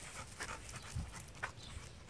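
Blue nose pit bull panting on a leash walk, a few short breaths at uneven intervals.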